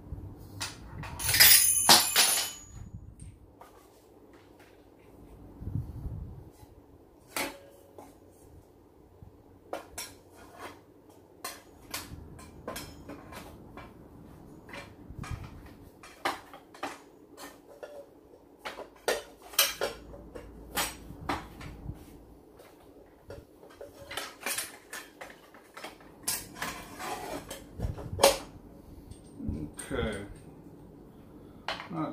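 Metal clinks and clanks of a miter saw blade change, as the blade and hex wrench are handled against the saw's arbor and guard. About one and a half seconds in comes a loud metallic clatter with a ringing tone, then scattered light taps and clicks.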